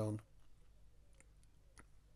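Several faint, light clicks of fine metal tweezers handling a tiny model gun mount, spaced irregularly over about a second and a half.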